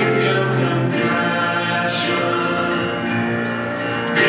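Church choir singing a hymn, the voices holding long notes.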